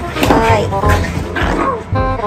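Small dogs growling as they play-fight, over background music with a steady beat.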